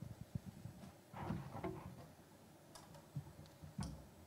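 Scattered light clicks and taps with faint rustling in a quiet hall, from children in a string orchestra handling their violins and cellos, and a faint murmur about a second in.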